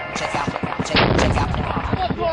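A shoulder-fired RPG launcher firing: one loud blast about a second in, followed by a low rumble that fades over the next second.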